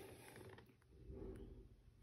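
Near silence with faint handling noise: light clicks and rubbing from a smartphone being held and pressed in the hands.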